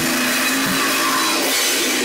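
Metal band playing in a small room: heavily distorted electric guitar and drum kit, the recording saturated into a dense buzz, with bass-drum hits at the start and just under a second in.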